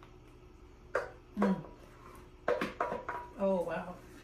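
A few sharp clinks of a spatula against a stainless steel stand-mixer bowl as thick cake batter is scooped out, mixed with two short bits of a voice.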